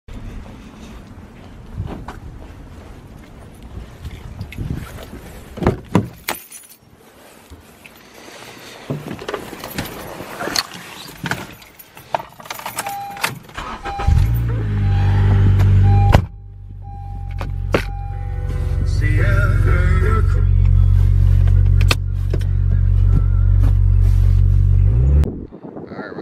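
Keys jangling and handling sounds, then a car's warning chime beeping while a Honda Civic sedan's engine starts and runs with a steady low rumble for about ten seconds before stopping abruptly.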